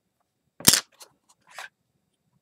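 A single sharp, loud clack of a LEGO plate set down on a tabletop. A few faint clicks and a short rustle of plastic pieces being handled follow.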